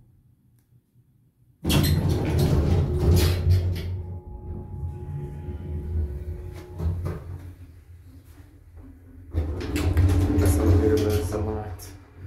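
Atlas Omega II traction elevator in motion: a sudden clatter about a second and a half in, then a low rumble with a thin steady buzzing tone from the DC drive as the car starts and runs, and another loud clattering stretch near the end.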